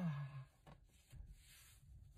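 A drawn-out 'ah' of relief trailing off and falling in pitch, then faint rubbing and handling sounds of hands on the steering wheel cover, with a couple of soft knocks.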